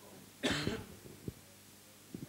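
A single cough about half a second in, with a faint low knock shortly after.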